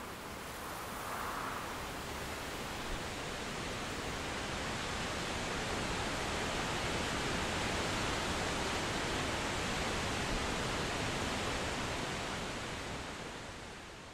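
Steady rush of falling water from the Cascata delle Marmore, a tall waterfall. It grows slightly louder, then fades away near the end.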